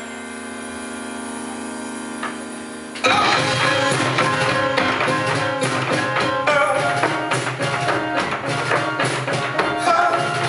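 Live band music: a held, sustained chord for about three seconds, then the full band comes in suddenly with drums and plucked strings in a steady rhythm.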